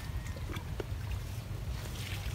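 A low, steady rumble with a few faint, brief clicks and rustles.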